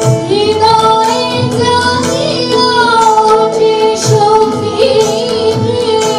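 Women singing a Bengali song live, accompanied by harmonium held chords, tabla, and violin. Low tabla strokes sound every second or so under the wavering vocal line.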